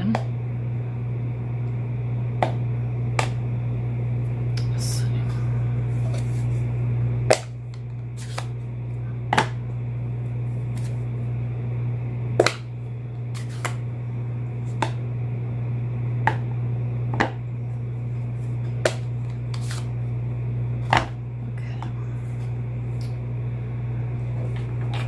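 Plastic flip-top ink pad cases being snapped open and handled: about a dozen sharp clicks at irregular intervals, over a steady low hum.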